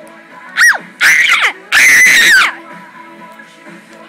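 Loud, high-pitched screams from a young voice: a short shriek, then two longer screams about a second in, each sliding down in pitch. Faint pop music plays underneath.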